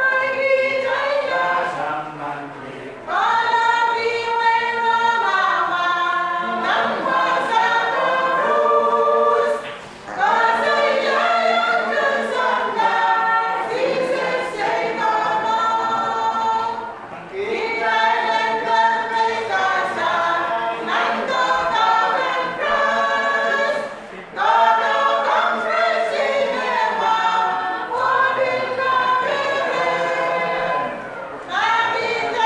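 A small mixed choir of women and men singing a hymn in harmony without instruments, in phrases broken by short pauses about every seven seconds.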